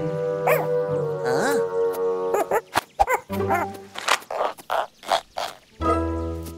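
Background cartoon music with held notes, over which a cartoon monkey makes short rising-and-falling animal calls. In the middle come a run of quick clicks and chattering calls.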